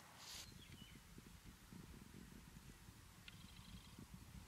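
Near silence outdoors: a faint, uneven low rumble throughout.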